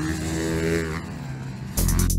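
Dirt bike engine running on a motocross track. Near the end, electronic music with a steady beat starts abruptly.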